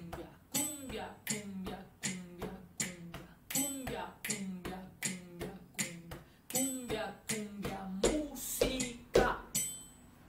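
Body percussion imitating the tambor llamador drum: sharp hand clicks about twice a second, with music playing underneath, getting louder near the end.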